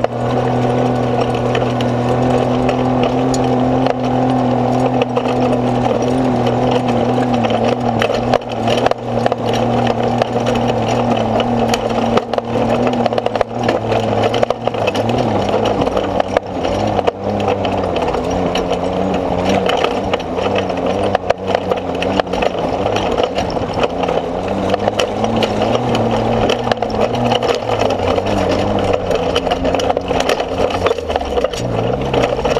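A motor running steadily, its pitch wavering and shifting from about halfway through, with scattered clicks and rattles.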